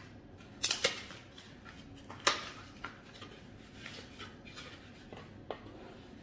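A small cardboard box being handled and opened by hand, with paper inside: a few sharp clicks and scrapes of cardboard, the loudest about two seconds in, then fainter rustles.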